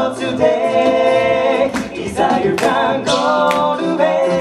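A five-man a cappella group singing close-harmony chords with held notes, backed by sharp percussive hits from vocal percussion.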